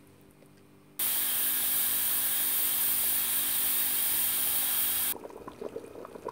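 Pressure cooker hissing steam from its valve: a loud, steady hiss that starts suddenly about a second in and cuts off about four seconds later.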